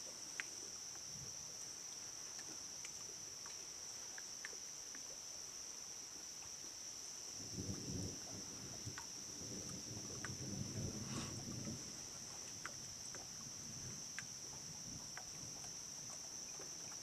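A steady chorus of crickets trilling in the dark, with a soft, low rumble rising and fading for a few seconds in the middle.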